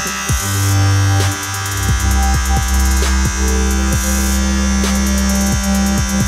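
Corded electric hair clippers buzzing steadily while cutting hair, under background electronic music with a beat.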